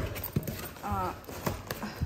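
Cardboard boxes being handled: a handful of irregular light knocks and rustles as box flaps and packed gift boxes are pushed about.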